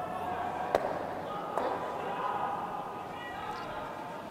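Granite curling stones colliding on a peel shot: one sharp clack a little under a second in as the delivered stone strikes the guard, then a second, fainter knock.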